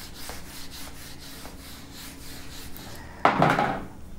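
A duster wiping a whiteboard, rubbing in repeated strokes about three a second. A brief louder burst comes near the end.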